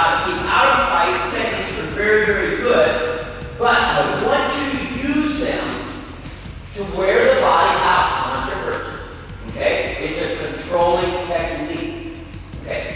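Speech only: a voice talking with short pauses, not clear enough to make out the words.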